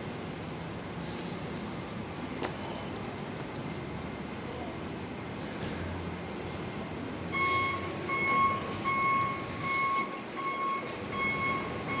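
A low steady rumble of engines and traffic, then a vehicle's reversing alarm starts about seven seconds in, beeping a single high tone in an even rhythm.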